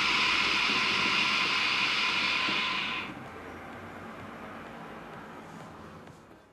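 A two-hose shisha (hookah) being drawn on at once: a steady rushing hiss of air pulled through the head, with the water in the base bubbling. It stops about three seconds in and leaves only a faint hiss.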